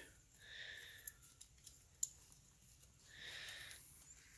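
Faint handling of a ratchet strap: two soft swishes of nylon webbing being moved, with a couple of light clicks from the metal ratchet buckle.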